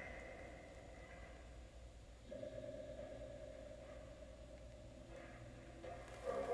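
Faint output of a Phasmabox spirit-box app: a faint high tone in the first second, then a steadier, lower tone that starts about two seconds in and holds until near the end.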